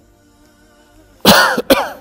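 A man coughing twice in quick succession, loud, starting about a second and a quarter in.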